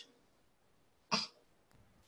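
A single short cough about a second in, with near silence around it.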